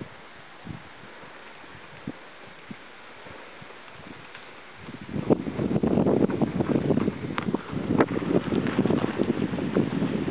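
Wind on the microphone: a light steady hiss with a few soft thuds, then much louder rough buffeting from about five seconds in.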